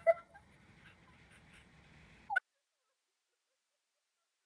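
The last of a woman's laugh trailing off, then faint room tone with one short high squeak about two seconds in, followed by dead silence.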